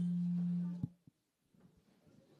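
A steady low electronic tone from the hearing room's microphone and sound system. It cuts off with a short knock a little under a second in, leaving near silence.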